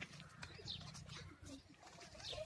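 Faint outdoor ambience: short, high bird chirps about once a second over a low steady rumble.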